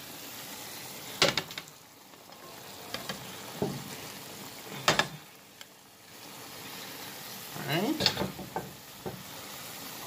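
Pot of chicken stew boiling with a steady hiss, while chopped vegetables are added with three sharp knocks against the pot.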